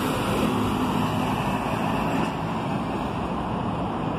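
Diesel coach bus driving past close by with a low, steady engine note and road noise. The engine sound weakens after about two seconds as the bus pulls away.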